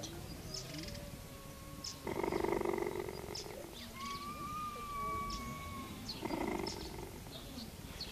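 Cheetah purring, a rough pulsing purr that swells loud about two seconds in and again near the end, with quieter stretches between.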